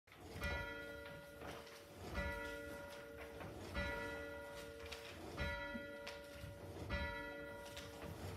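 A church bell tolling, struck five times at an even pace of about one stroke every second and a half, each stroke ringing on into the next.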